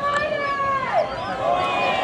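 People calling out over background crowd chatter: two drawn-out, high voice calls of about a second each, the first falling in pitch at its end.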